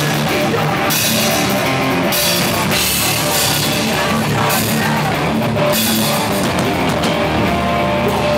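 Live hardcore band playing at full volume: heavy distorted guitars over driving drums and cymbals.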